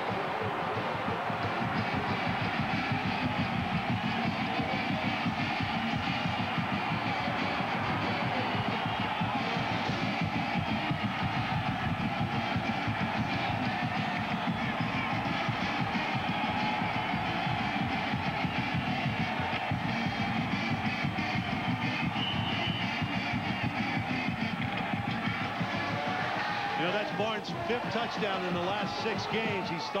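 Stadium crowd din with a marching band playing over it at a steady beat.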